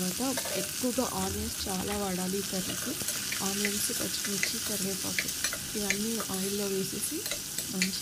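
Chopped onions sizzling as they fry in hot oil in a stainless-steel pot, stirred with a steel spoon that scrapes and clinks against the pot.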